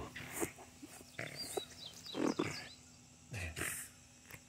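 Puppy growling in short bursts, about four, while tugging on a toy in play, the loudest a little after two seconds in.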